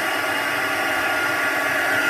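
Handheld craft heat tool (embossing heat gun) running with a steady blowing hiss of its fan.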